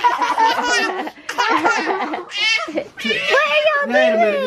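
Young children, a toddler among them, laughing and giggling in bursts during rough-and-tumble play, with high-pitched voices.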